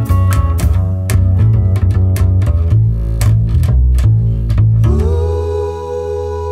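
Instrumental band music near the end of a song: quickly picked strings over a deep, heavy bass, then about five seconds in the picking stops and a held chord rings on, its upper tone bending slowly.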